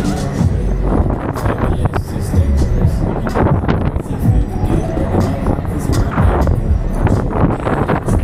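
A 1987 Huss Break Dance 1 fairground ride running at speed, heard from inside a rider's gondola: a loud continuous rumble with irregular clattering from the spinning cars and turntable.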